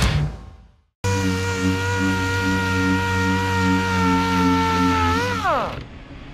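Intro music fades out in the first second. After a short gap, a random orbital sander runs with a steady whine for about four seconds, then briefly rises and winds down with a falling pitch as it is switched off.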